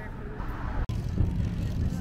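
Wind buffeting the microphone outdoors: an irregular low rumble that drops out for an instant about a second in, then comes back stronger.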